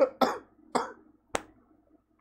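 A man's laughter dying down in three short breathy bursts in the first second, followed by a single sharp click.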